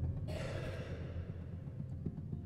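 Low strings of a grand piano ringing on after being struck inside the instrument, slowly dying away. About a third of a second in, a brief airy swish rises over the resonance and fades within a second.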